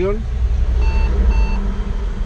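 Two short electronic beeps about half a second apart, over a steady low rumble of road traffic.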